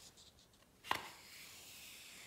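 One sharp tap of a hand on a glossy page of a large open book about a second in, with faint paper rustling as the hand slides across the page.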